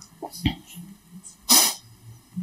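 A single short, loud burst of breath noise from a person, close to the microphone, about one and a half seconds in.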